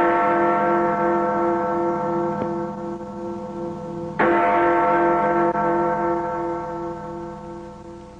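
A large bell tolls, ringing on with a wavering, pulsing hum; it is struck again about four seconds in and rings on, slowly fading.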